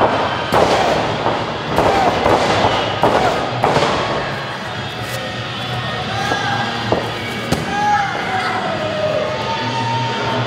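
Wrestlers stomping a downed opponent on a wrestling ring's canvas: a run of about six sharp, loud thuds in the first four seconds. After that the impacts give way to voices and music.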